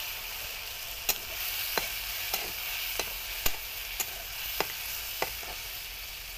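Ground spice masala sizzling in hot oil in a metal wok, with a spatula stirring it and clicking against the pan about eight times, roughly every half second.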